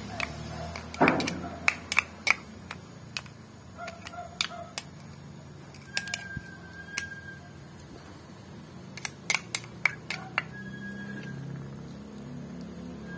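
Irregular sharp clicks and taps of a metal spoon against a small ceramic dish and the wok as seasoning is scraped into the pan, the loudest about a second in, over a low steady hum.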